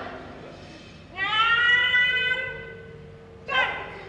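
A human voice holds one long high-pitched note for about a second and a half, gliding up at the start and then held steady.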